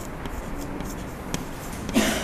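Chalk writing on a blackboard: a few short, irregular scratching strokes and light taps as a word is written out.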